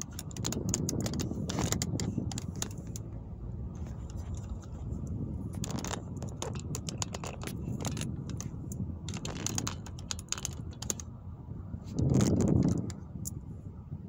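Road and engine noise inside a moving car's cabin, with scattered light clicks and rattles. About twelve seconds in there is a brief, louder low rush lasting under a second.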